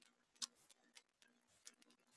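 Near silence with three faint, short clicks: the clearest a little under half a second in, and smaller ones at about one second and near the end.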